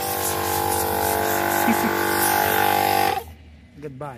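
Small plug-in portable air compressor running steadily while it inflates a flat car tyre, then switched off abruptly about three seconds in.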